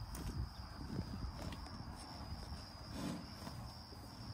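American bison grazing close by, tearing off and chewing grass in short, irregular crunches.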